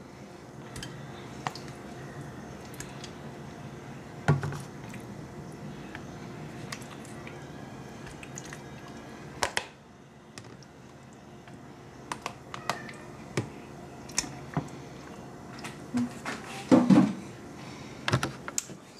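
Raw chicken breasts tipped from a plastic container into a slow cooker's crock and moved about by hand: scattered soft wet slaps, clicks and knocks over a faint steady room hum, busiest near the end.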